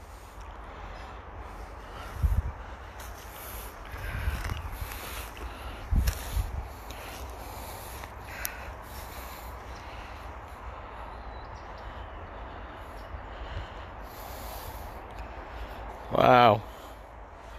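Steady outdoor background noise picked up by a handheld phone microphone, with a few low bumps about two, four and six seconds in.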